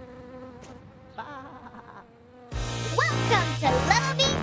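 Cartoon bee buzzing sound effect. It is faint for the first couple of seconds, then a loud buzz with swooping pitch comes in about two and a half seconds in.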